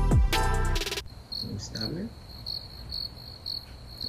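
Music cuts off about a second in, leaving cricket chirping: a high, steady trill with short louder chirps every half second or so.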